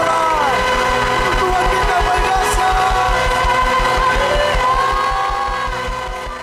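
Live worship band music holding a sustained chord over a rapid low pulsing bass, with a few gliding sung or lead lines on top, fading out near the end.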